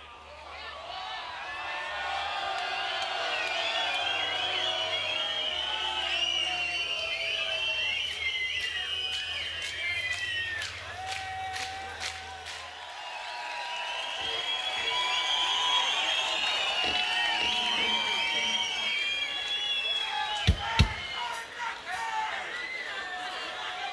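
A festival crowd shouting, whistling and cheering, many voices at once, easing off about halfway through and then swelling again. Two sharp knocks come close together near the end.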